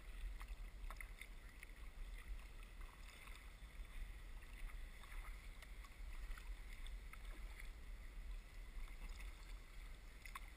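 Kayak paddling heard faintly through a sealed camera housing: small irregular drips and light water ticks over a steady low rumble.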